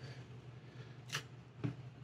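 Two faint, short, crisp handling sounds about half a second apart: fingers pulling a small piece off a wad of Blu-Tack.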